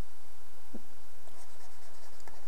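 Stylus scratching over a pen tablet as a word is handwritten, faint over a steady low background hum, with one small tick about three-quarters of a second in.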